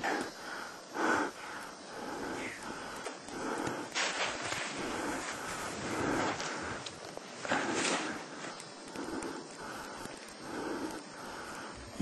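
Skis swishing through deep powder snow in repeated turns, a soft swell of hiss about once a second, with breath sounds close to the microphone.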